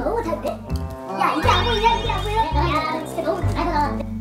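Young men's voices chattering over background music with a steady bass line.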